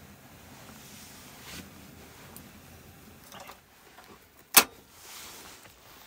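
Small peanuts dry-roasting in a frying pan over charcoal embers: a faint, quiet background with a few soft ticks and one sharp click about four and a half seconds in.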